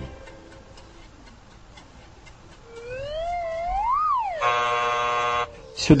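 Comic sound effect of the judgement scale: after a quiet pause, a swooping tone wavers, rises to a peak and falls as the needle swings, then a harsh buzzer sounds for about a second and cuts off, signalling that the weighed life failed to measure up.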